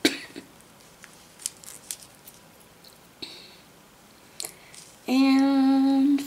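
Faint rustles and small clicks of a needle and thread being worked through stiff Aida cross-stitch cloth. Near the end comes a louder held hum in a woman's voice, one steady note lasting about a second.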